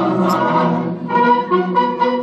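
An anthem performed by voices and a brass band. About a second in, the singing gives way to the band's brass and woodwinds playing a rhythmic passage of short, separate notes.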